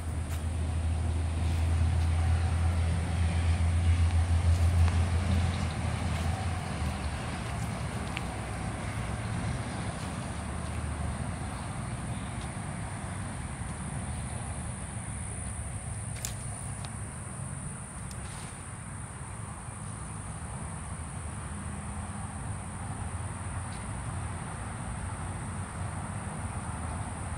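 Outdoor ambience: a low rumble of passing traffic swells and fades over the first six seconds, then a steady background hum remains with a continuous high-pitched insect drone.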